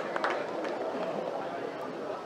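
Outdoor cricket spectators: a low murmur of distant voices, with a few scattered claps dying away at the start.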